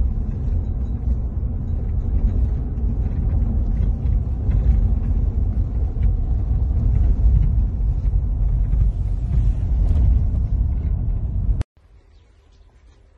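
Car driving, heard from inside the cabin: a steady low rumble of engine and road noise that cuts off suddenly near the end.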